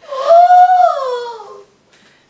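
A woman's voice giving one long, eerie ghost-like "ooooh" wail that rises in pitch, holds, and then slides down. It fades out after about a second and a half.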